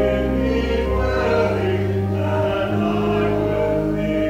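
A hymn sung by voices over organ accompaniment: held chords above sustained low bass notes that move from note to note.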